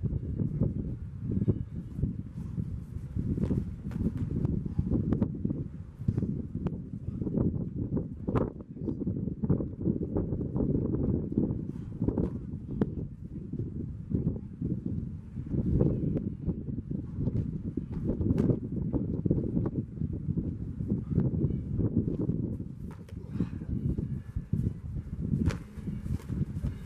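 Boxing gloves landing and shuffling footwork on dry grass during sparring, heard as scattered sharp knocks and slaps at irregular intervals over a steady low rumble.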